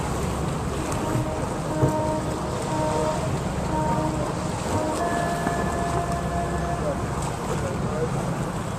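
Small tour boat's motor running steadily as the boat cruises slowly, with wind rumbling on the microphone.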